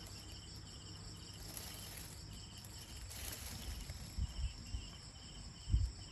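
An insect chirping quietly in short, evenly spaced pulses, about two a second, over faint background noise, with a brief low thump near the end.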